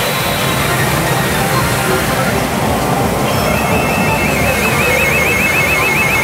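Pachinko parlor din from a Sanyo Umi Monogatari pachinko machine and the hall around it: steady machine music and noise. From about three seconds in, a high electronic warbling tone repeats rapidly, a sound effect that is heard as a good sign.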